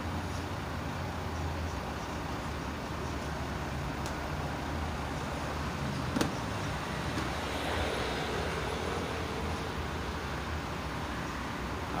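Steady road traffic noise with a low engine hum from nearby vehicles, and a single sharp click about six seconds in.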